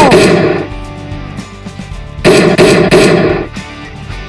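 Dubbed gunfire sound effect: a short burst of rapid shots at the start, then a second burst of about three or four shots a second from about two seconds in, lasting just over a second. Background music plays throughout.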